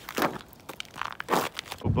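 Footsteps crunching on an ice-glazed, snow-crusted trail, several steps in quick succession.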